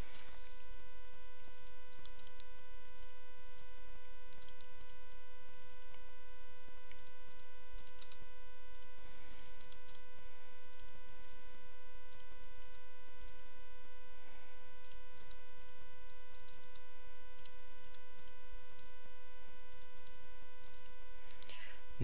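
A steady electrical hum with a high whine in it, and faint, scattered clicks of a computer keyboard as a command is typed.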